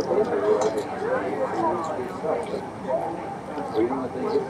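Voices of diners talking at nearby tables, a steady murmur of overlapping conversation, with a few faint light clicks.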